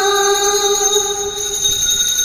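A devotional hymn: a voice holds one long sung note that fades away near the end.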